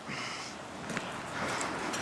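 Kitchen knife slicing through a squid hood onto a plastic cutting board, with one faint tap about a second in, over a steady background hiss.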